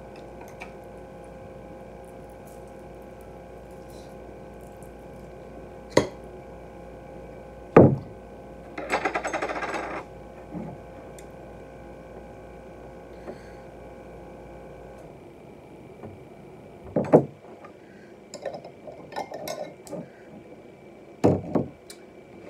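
A glass jar of guacamole salsa being handled, shaken and poured over a plate of nachos. There are several sharp knocks, the loudest about eight seconds in, a rattly second-long stretch right after it, and short sputtering bits near the end, over a steady electrical hum that stops about two-thirds of the way through.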